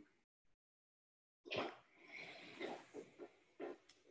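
Faint wordless vocal sounds from a person on a video call. They begin about one and a half seconds in, after dead silence, and last about two seconds.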